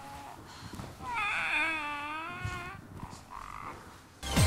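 A baby-care doll giving one wavering cry about a second in, lasting about a second and a half.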